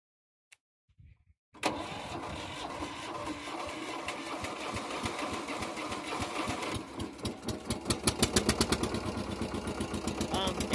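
Pasquali 991 tractor engine cold-started: the starter cranks for about five seconds, then the engine catches about seven seconds in and runs with loud, uneven firing pulses.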